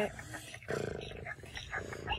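A girl's voice making a short, low, rough vocal noise, like a groan, a little under a second in, with a fainter one near the end.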